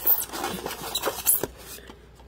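Plastic toy telescope being lifted out of its polystyrene foam tray: plastic rubbing and scraping against the foam, with a couple of light clicks about a second in, fading after about a second and a half.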